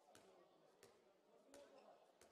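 Near silence in a sports hall, broken by faint knocks about every 0.7 seconds: a handball being bounced on the court floor.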